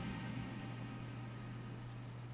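Faint room tone: a steady low hum with a soft hiss.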